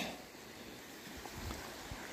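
Faint, steady outdoor hiss with a few soft, low rumbles of wind on the microphone in the second half.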